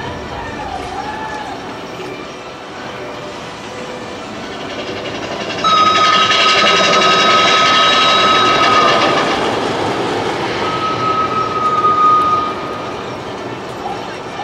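Big Thunder Mountain mine-train roller coaster running along its track, building up from about four seconds in and becoming loud and rushing from about six seconds in, with a steady high-pitched tone over the loudest stretch. It falls back shortly before the end.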